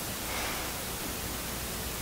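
Steady hiss of background noise, an even static-like haze with no other distinct sound.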